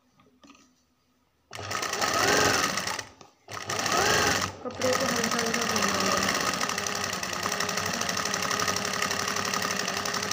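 Sewing machine stitching a line of decorative stitching along a cloth cuff. It starts about one and a half seconds in, stops briefly twice, then runs steadily.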